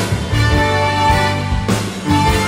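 Live band music with a horn section of saxophone, trombone and trumpet playing held chords over bass and drums, with no singing.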